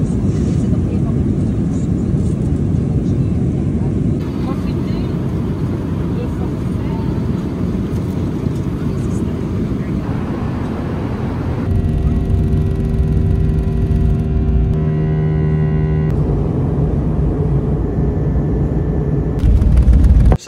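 Airliner cabin noise in a run of short clips: a steady rush of jet engines and airflow. For a few seconds in the middle a steady engine whine of several tones sits over it, and near the end it grows louder as the plane rolls along the runway.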